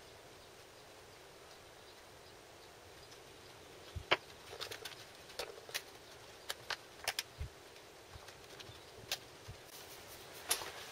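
Light clicks and taps of a thin plastic modular seed tray being handled as fingers press seeds into the soil in its cells. They start about four seconds in as about a dozen scattered ticks, the loudest early in the run, after a few seconds of faint background.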